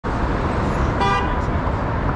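Street traffic running past with a steady low rumble, and a short car-horn toot about a second in.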